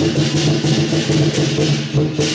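Lion-dance percussion music: a drum beating with cymbal clashes about three to four times a second over steady low ringing tones.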